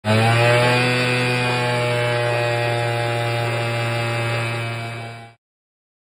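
Small youth ATV's engine running at a steady high speed, its pitch climbing slightly at first and then holding. The sound fades and cuts off near the end.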